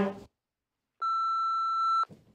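Steady electronic test tone, a single unwavering beep, played with television colour bars. It starts about a second in and cuts off at the end.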